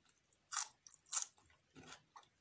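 Crunching bites into a crisp raw vegetable, chewed close to the microphone: two sharp crunches about half a second apart, then a softer one near the end.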